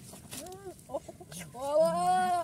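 A short rising-and-falling call about half a second in, a few brief notes, then from about one and a half seconds a much louder, drawn-out call with a clear pitch that rises slightly: vocal calls from a hen or a person.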